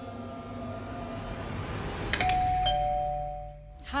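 Two-note doorbell chime about halfway through, a higher note then a lower one, each held and fading away. Before it comes a faint swelling hiss.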